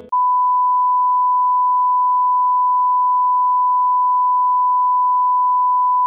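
Television test tone: one steady, unbroken pure beep, starting just after the music cuts off. It marks the station's close-down after the end of the broadcast day.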